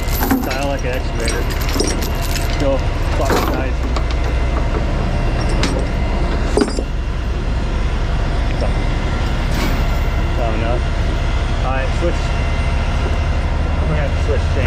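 Steel tie-down chains rattling and clanking as they are dragged out of a storage box and laid across a wooden deck, with a ratchet load binder handled among them. A few sharper metal clanks stand out, and a steady low engine drone runs underneath.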